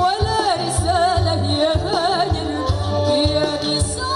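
A woman singing a qasidah song into a microphone, her melody wavering and ornamented with quick turns, over amplified band accompaniment with a steady, repeating bass and drum rhythm.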